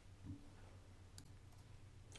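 Near silence with a faint steady low hum and a single faint click about a second in.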